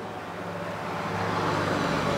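Open handheld microphone being passed from one speaker to the next: a steady low hum with a rushing hiss that grows louder toward the end.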